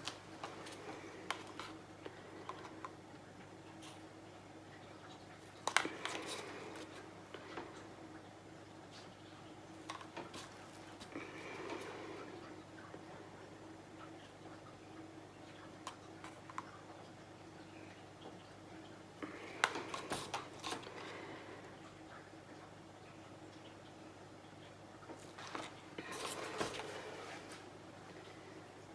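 Faint small clicks and taps of paint cups and bottles being handled on the work table while drops of resin paint are placed, coming in a few short clusters over a steady low hum.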